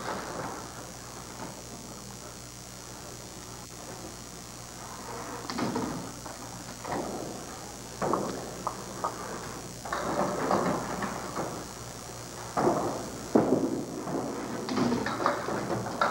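Candlepin bowling alley sounds: a steady room hum, then a run of sharp knocks and clatters through the second half as a candlepin ball is bowled and knocks down pins.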